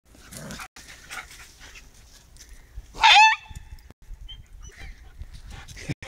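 A Podenco lets out one loud, high-pitched squeal about three seconds in, its pitch dropping at the end: a protest at being sniffed by another dog.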